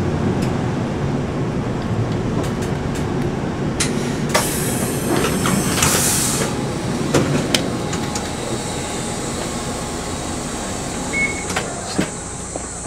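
City bus heard from inside, its engine running with a steady low rumble as it moves slowly. About four seconds in comes a burst of compressed-air hiss lasting some two seconds, with scattered clicks and knocks from the cabin.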